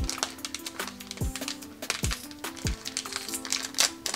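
Background music with held notes and deep kick drums, over the crackly crinkle and tear of a foil Magic: The Gathering booster pack being ripped open by hand.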